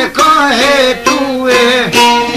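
A man singing an Albanian folk song in a wavering, ornamented line that slides down near the end, accompanied by a plucked çifteli, the two-stringed Albanian long-necked lute.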